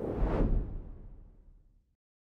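Whoosh sound effect with a deep low rumble under it, an outro logo sting. It swells at once and then fades out within about a second and a half.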